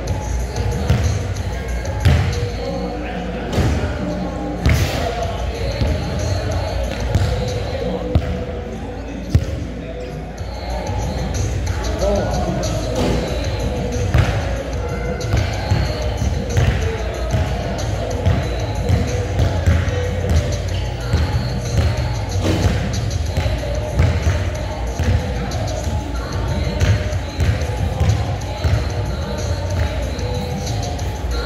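Basketball bouncing and hitting the court during shooting practice: a run of irregular sharp thuds, with background voices and music underneath.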